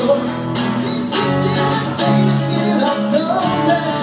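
Live rock band playing: strummed acoustic guitar, electric bass and a drum kit with cymbals, with a vocal line over them.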